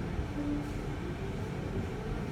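Faint background music, a melody of short held notes changing pitch, over a steady low rumble.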